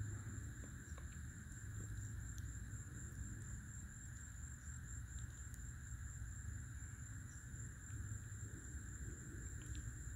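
Faint outdoor background: a steady low rumble under a thin, steady high-pitched tone, with a few faint ticks and no distinct sound event.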